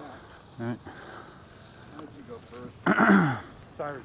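A man clearing his throat once, loudly and briefly, about three seconds in, after a short spoken "yeah, alright".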